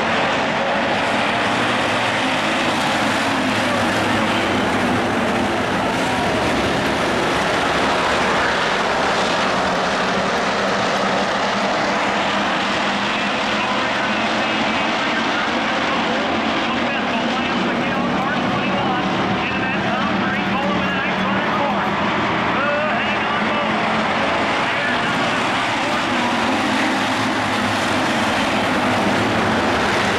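A pack of IMCA Hobby stock cars racing, their engines running together at speed in a steady, unbroken din, with spectators' voices underneath.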